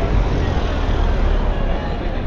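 A car driving slowly past close by, a steady low engine and tyre noise that swells as it passes, over the chatter of people on the pavement.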